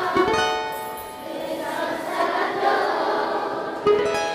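Acoustic guitar playing a song's introduction: a plucked chord sounds just after the start and rings out, with quieter playing after it, and another chord is struck just before the end.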